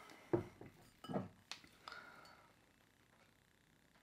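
Glass soda bottles being handled: four short knocks and clinks in the first two seconds as a bottle is set down and the next picked up, the last with a brief glassy ring.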